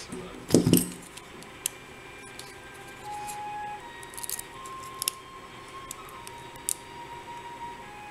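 A short laugh, then a few scattered light metallic clicks and ticks of a lockpick working in the keyway of a small brass lock cylinder, over faint background music.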